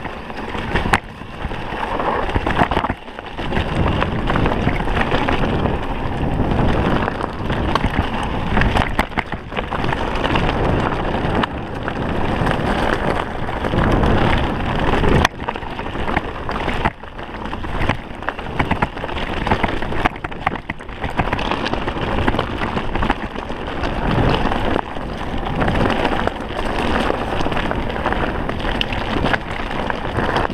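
Mountain bike descending a dirt and dry-leaf trail at speed, with wind buffeting the action camera's microphone and the tyres rushing over the ground. Frequent short knocks and rattles come from the bike bouncing over stones and roots.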